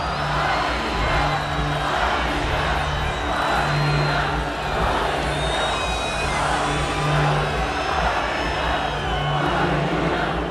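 Concert intro music with low drone notes repeating, under a large arena crowd cheering and shouting that swells in waves about once a second. A high tone falls in pitch around the middle.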